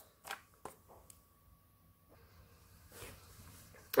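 Hands handling paper and vellum on a desk: a few soft taps and rustles in the first second, then near quiet, with a faint rustle about three seconds in.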